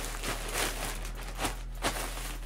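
Soft rustling and handling noises with a few light knocks, over a steady low electrical hum.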